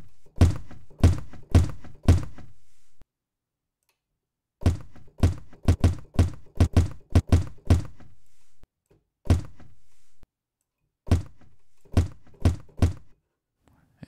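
A sampled guitar case slam played back over and over from a software drum sampler: dull, low thuds in uneven runs with short pauses between. Its volume envelope is being cut back to trim the tail, shaping the slam into a kick drum.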